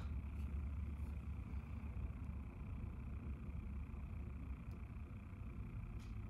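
Quiet room tone: a steady low hum with a faint hiss and no distinct events.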